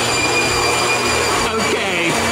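Corded electric leaf blower running steadily: a loud rush of air with a constant high motor whine.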